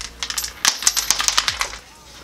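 Coins being dropped by hand through the coin slots of laser-cut MDF and acrylic letter piggy banks: a quick, irregular run of sharp clicks and clinks as they land on coins already inside.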